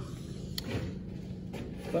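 Steady low background hum with a single sharp click about half a second in.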